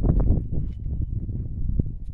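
Wind buffeting the microphone outdoors: an unsteady low rumble with no voice over it.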